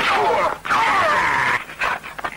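High, wavering cries and yells from fighters in a hand-to-hand fight, two long wailing calls with pitch sliding up and down, the second breaking off about one and a half seconds in.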